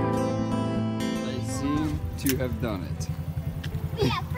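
Guitar-led background music for about the first second and a half, then children's voices over the low, evenly pulsing idle of a small dirt bike's engine.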